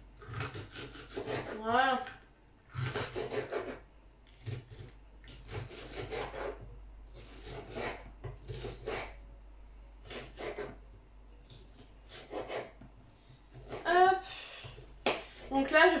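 Kitchen knife slicing a green bell pepper on a cutting board: a long run of short, irregular cuts and light knocks of the blade on the board, a few strokes at a time with short pauses between.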